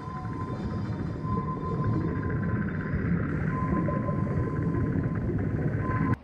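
Ambient soundtrack drone: a dense, low, noisy texture with a thin steady high tone that comes and goes, ending abruptly.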